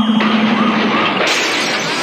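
Electronic siren sound effect wailing in quick repeated rises and falls, marking time up at the end of the timed round. A steady tone under it cuts off at once, and the wail stops about a second in, giving way to a loud crashing noise.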